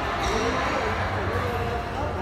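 Echoing badminton-hall ambience between rallies: players' voices talking over a steady low background rumble.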